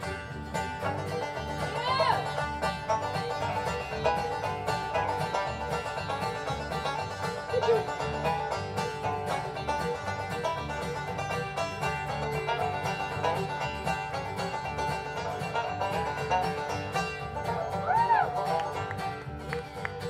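Instrumental break of an acoustic bluegrass band: a five-string banjo leads with fast picked notes over strummed acoustic guitars, upright bass and fiddle.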